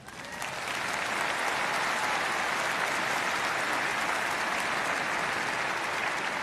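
Large audience applauding, swelling over the first second and then holding steady.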